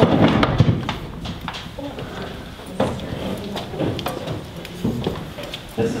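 Footsteps climbing wooden stairs, with irregular knocks and thuds and some clatter.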